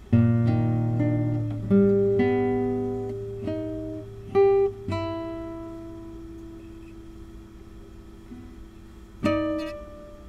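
Solo classical guitar playing a slow passage: plucked notes and chords that ring and fade, with a long held chord in the middle and a fresh chord near the end.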